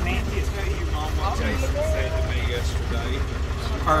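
Engine running with a low, steady rumble, with people talking in the background.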